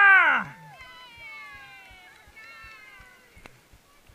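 A spectator's high-pitched shout of 'Yeah!', falling in pitch and ending about half a second in, followed by a fainter, long, slowly falling cheer.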